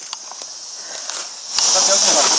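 A steady high-pitched cicada chorus in summer woodland. It is faint at first, then jumps much louder about a second and a half in, with a click.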